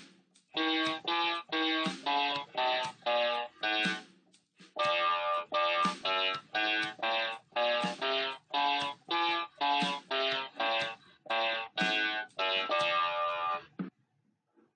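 Electronic keyboard (an MQ-6106 61-key) playing a one-octave F major scale up and down in single notes, about two notes a second, with a short break about four seconds in.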